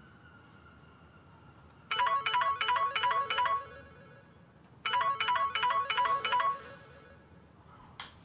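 Mobile phone ringtone for an incoming call: a short electronic melody of quick repeated notes, heard twice, starting about two seconds in, with a pause between the two rings.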